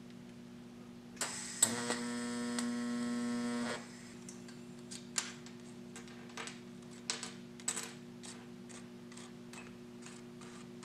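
A TIG welding arc strikes with a sharp start and runs as a steady buzz for about two and a half seconds. Scattered light clicks and taps of small metal parts and filler rod being handled follow, over a constant low hum.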